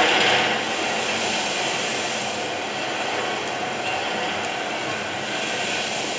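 Film soundtrack playing over the lecture hall's speakers: a steady, dense din with no clear speech, a little louder in the first half second.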